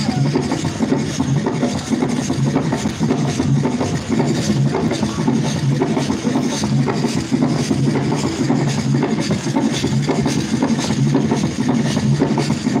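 Loud drum-led music with a steady, repeating beat.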